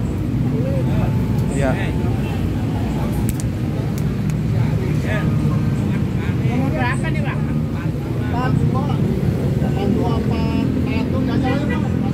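Steady low rumble of road traffic under scattered voices of people talking nearby.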